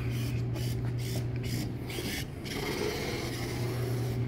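Small hobby robot's gear motors and servos whirring as it drives and moves its legs. Under it runs a steady low hum.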